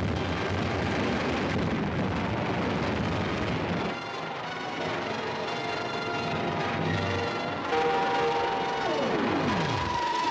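Old film soundtrack: a dense rumbling roar of crashing destruction for about the first four seconds, then dramatic music with held notes. Near the end a tone falls steeply in pitch.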